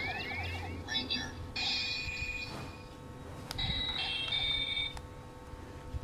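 DX Mystic Morpher toy from Power Rangers Mystic Force playing electronic phone-style sound effects through its small, quiet speaker as its keypad is pressed. Rising chirps come first, then a warbling tone, steady tones, a couple of sharp button clicks, and a run of stepped beeps.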